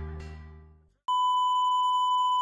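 Music fades out over the first second. After a moment of silence a steady, unchanging test tone starts and holds: the line-up tone that goes with television colour bars.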